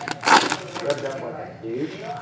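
Foil trading card pack wrapper crinkling and tearing as it is opened by hand, mostly in the first half.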